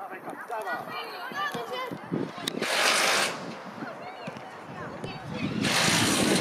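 Children calling and shouting to each other during a football match, short high-pitched calls one after another. A brief rushing noise comes about three seconds in and again near the end.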